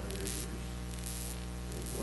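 Steady electrical mains hum in the recording, with three short bursts of hissing static.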